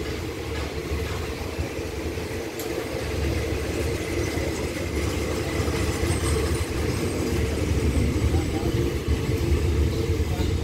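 Thai ordinary passenger train pulling out of the station: a steady low rumble of the coaches rolling past and the drone of the hauling Hitachi diesel-electric locomotive, growing gradually louder.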